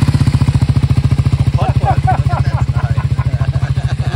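Triumph Scrambler 400 X's single-cylinder engine idling steadily with an even, rapid beat, moments after the brand-new bike's first-ever start.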